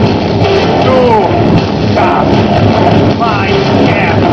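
Electro-industrial (EBM) band playing live: loud, dense music with a heavy low end, with sliding, wavering tones over it.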